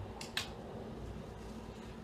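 Two brief sharp clicks close together near the start, the second louder, from small objects being handled, over quiet room tone with a low steady hum.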